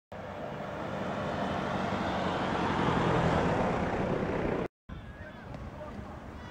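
A vehicle passing by: engine and road noise swell to their loudest about three seconds in, then ease off before cutting out suddenly. A quieter street background follows, with a few faint chirps.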